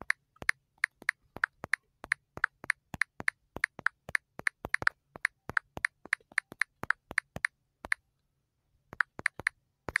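Rapid key-press clicks from typing on a smartphone's on-screen keyboard, each a short, sharp tick, about three to four a second, with a pause of about a second near the end before a few more.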